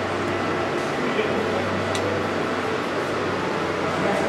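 Steady restaurant room noise: an even hiss over a low hum, with faint voices in the background and a light click about two seconds in.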